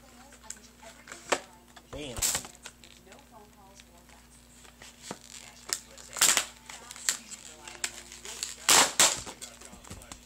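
Plastic Pokémon Dragon Vault blister packaging being handled and pried open: irregular crinkling and crackling, with a few louder rustling bursts, the loudest a pair near the end.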